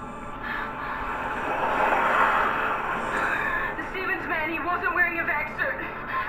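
Soundtrack of a TV drama: a swell of tense music over the first few seconds, then a woman's voice delivering a line of dialogue.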